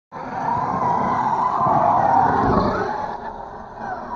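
Arrma Typhon V3 RC buggy's brushless motor on 5S power, whining at full throttle with a wavering pitch. It fades away after about three seconds as the buggy leaves the jump.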